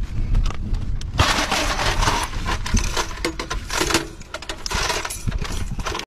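Metal clinking, scraping and rattling of a linked cartridge belt being handled and loaded into an M2 Browning .50-calibre machine gun, in irregular bursts with a denser rattle about a second in and again near the end.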